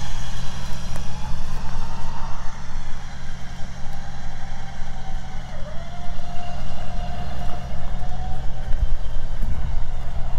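Jeep's electric winch hauling a heavy stalled truck backwards on synthetic rope: a motor whine that wavers under the load and dips in pitch briefly about halfway through, over a steady low rumble.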